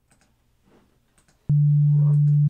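Near silence, then about one and a half seconds in, a loud, steady sine-wave tone from SampleRobot's tuning oscillator starts abruptly. It sounds the next note to be sampled, key 50 (D3, about 147 Hz), as a pitch reference for retuning the kalimba.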